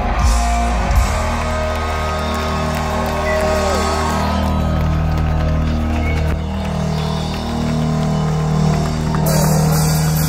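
Live punk band through a large PA: amplified electric guitar and bass hold sustained, droning low notes as one song rings out into the next.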